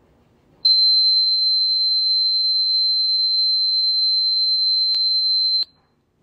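A single steady, high-pitched electronic tone, a pure beep held for about five seconds without change, starting just under a second in and cutting off abruptly. A faint click sounds shortly before it stops.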